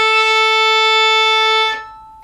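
A violin's open A string is bowed in one long, steady down-bow toward the tip: a single held note with no change in pitch. It stops about three-quarters of the way through, and the string keeps ringing faintly afterwards.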